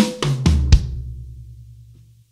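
Drum kit fill: a quick broken sixteenth-note figure of about six strokes across the snare and toms in under a second, ending on a hard low hit. The low drum then rings on and fades away.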